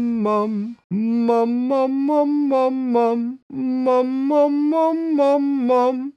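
A man singing the syllable "mum" over and over, about three or four a second, in short phrases that climb and fall back. He breathes twice, about a second in and about three and a half seconds in, and starts each phrase a little higher. It is a vocal range-extending exercise that adds pitch without adding volume.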